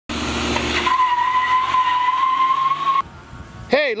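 A car with a steady high-pitched squeal over loud engine and road noise, cutting off abruptly about three seconds in. A man's voice starts right at the end.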